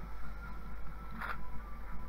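A steady low hum with one brief soft rustle about halfway through, as a hand brushes the foam and plastic packaging of a 3D-printer kit.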